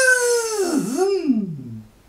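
A voice-like wailing cry. Its pitch sweeps up to a high held note, dips, rises once more about halfway through, then slides down low and fades near the end.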